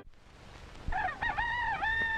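After a moment of faint soundtrack hiss, a drawn-out animal-like cry begins about a second in, held on one pitch with several quick wavering dips.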